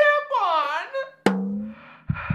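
A woman's high-pitched voice vocalising, swooping down and back up, then a single sharp hit with a short low ring.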